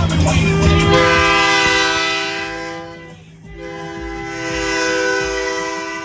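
Semi truck's multi-tone air horn sounding a chord in two long blasts, the first starting about half a second in and the second after a short break just past the middle.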